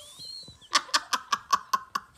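A person laughing: a quick run of short laugh pulses, about five a second, through the second half.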